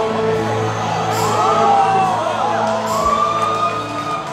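Live band music holding a sustained chord, with several voices in the audience whooping over it from about a second in.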